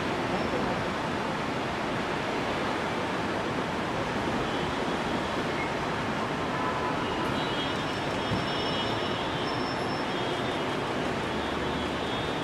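Steady, dense background noise of a busy airport terminal hall, unbroken throughout, with faint high-pitched tones coming in about halfway through.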